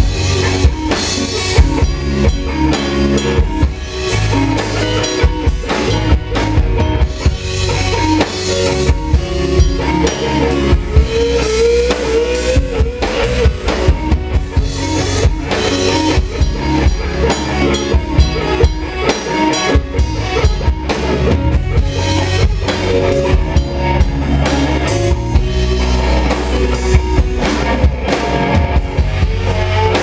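Rock band playing: electric guitar over a full drum kit with a steady bass-drum pulse.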